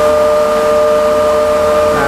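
Rotary hay cutter with an 11 kW motor running, its knife rotor spinning at about 3000 rpm and giving a loud steady hum of several held tones over a rush of air. This is the rotor's normal aerodynamic noise from its knives, not a fault.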